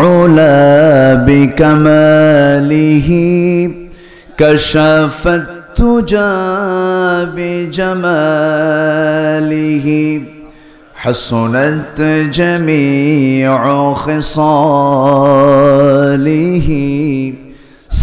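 A man chanting Islamic devotional verse unaccompanied. He draws out long melodic phrases, holding notes with a wavering vibrato, with short breaks for breath.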